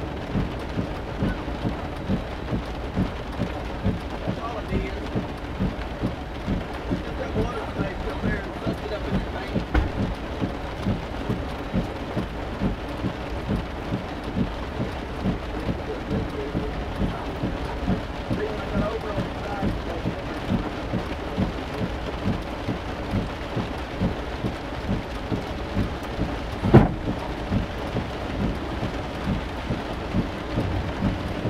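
Steady low rumble inside a stopped vehicle's cabin with its engine left running, with a soft regular pulse about one and a half times a second and a single knock near the end.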